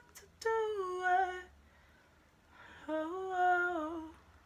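A woman's voice singing unaccompanied: two wordless, hummed phrases. The first starts about half a second in and steps down in pitch. The second comes in about three seconds in, rising and then wavering down, with a near-silent pause between them.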